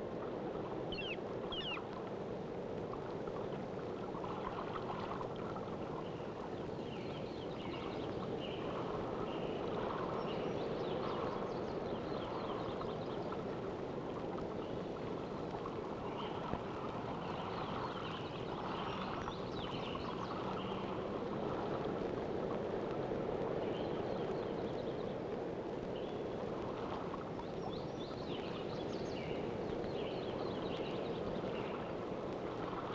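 Steady rushing of running water, like a stream, with short high chirping calls coming in clusters every few seconds.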